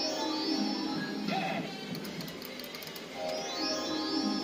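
Rainbow Riches Pots of Gold fruit machine playing its electronic reel-spin tune and jingles. A bright rising sweep of tones comes near the start and again about three seconds later as a new £1 spin begins, with a few clicks in between.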